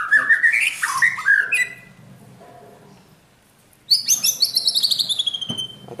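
Caged white-rumped shamas (murai batu) singing: a run of quick chirping notes over the first second and a half, then after a short lull a loud, fast trill that falls steadily in pitch for about two seconds.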